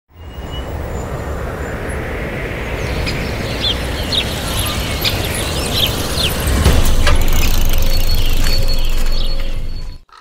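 Intro sound bed: a steady, rumbling wash of noise with a few short bird-like chirps between about three and six seconds in, swelling louder about seven seconds in and cutting off suddenly at the end.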